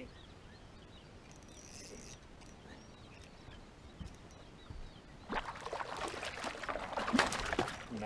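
Low outdoor hiss, then from about five seconds in a stretch of splashing and rustling as a hooked bass fights on the line at the surface by a submerged tree.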